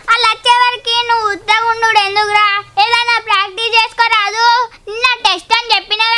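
A boy singing in a high, clear voice, holding steady notes in short phrases with brief breaks between them.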